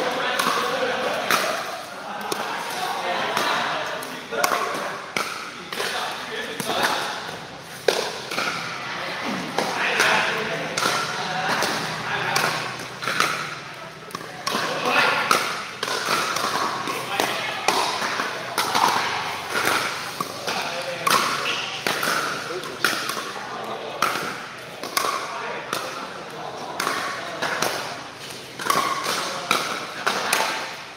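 Pickleball play: paddles striking the hard plastic ball in short sharp pops, many times over, with people talking throughout.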